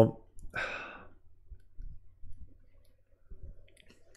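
A short breathy exhale about half a second in, then a few faint, short clicks scattered through the rest.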